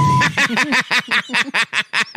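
A steady censor bleep tone cuts off just after the start, and a man breaks into rapid, staccato laughter, about seven short bursts a second.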